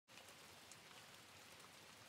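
Near silence with a faint, steady rain-like patter, the kind of rain ambience layered at the start of a lofi track.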